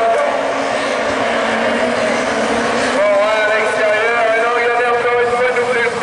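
Several Division 4 rallycross car engines, a Renault Clio among them, running at high revs as the pack accelerates from the start. The pitch climbs, drops and climbs again with the gear changes.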